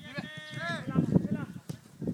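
Footballers shouting short calls to each other during a training drill, with a sharp knock near the end from a ball being kicked.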